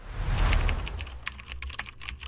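Channel logo sting sound effect: a whoosh swelling to a peak about half a second in over a low rumble, then a rapid irregular run of sharp clicks.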